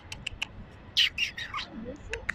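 Bird calls: a quick run of short, sharp, high ticks, then a louder call about a second in, followed by a few more short notes.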